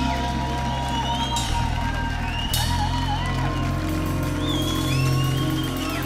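Live rock band with electric bass, electric guitars and keyboards holding sustained chords at the close of a song, the chord changing a couple of times.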